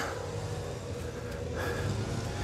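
Steady low outdoor background rumble, with no distinct event.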